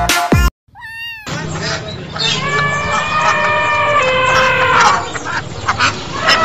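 Cat meowing: a short meow about a second in, then longer drawn-out meows.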